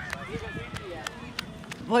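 Footsteps on a dirt road, heard as faint scattered ticks, with faint voices in the background.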